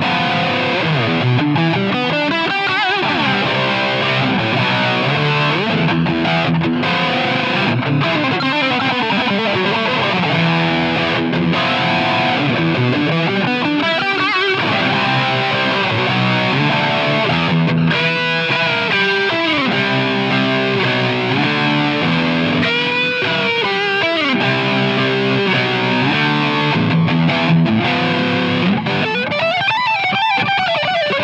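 ESP LTD SN-1000HT electric guitar played with distortion in a fast, aggressive lead passage: quick runs of single notes with string bends, notably about two-thirds of the way through and again near the end.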